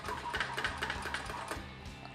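A run of light, irregular clicks and rattles from the governor linkage of a Briggs & Stratton Industrial Plus engine, flicked back and forth by hand while the engine is not running, over background music.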